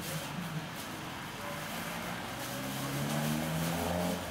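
A motor vehicle's engine running steadily behind a hiss of background noise, its low hum building and growing louder toward the end.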